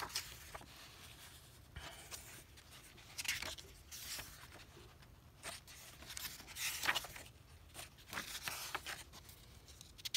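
Paper pages of a softcover book being turned one after another, a soft swish and rustle of paper about every second.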